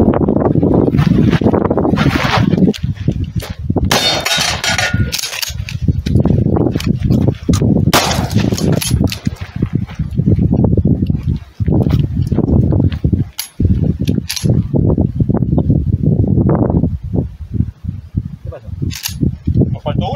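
A shotgun fired several times, a few seconds apart, over voices and loud, rough background noise.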